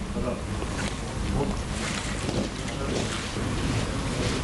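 Wind buffeting the microphone outdoors, a steady low rumble with scattered brief ticks and rustles.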